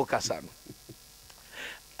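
A man's speech trailing off, then a short pause filled with faint steady hum and a brief soft hiss about one and a half seconds in.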